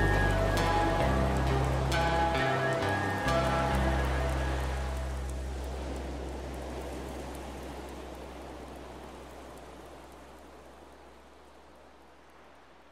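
Hard rock band playing its closing bars: a few last chords with drum hits, then the final chord rings out and fades slowly toward silence.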